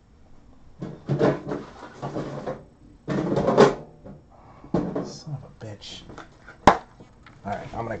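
Indistinct voices with some music underneath, and one sharp click about two-thirds of the way through.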